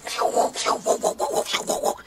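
A quick run of scratchy scuffs and rubbing noises, several a second and uneven.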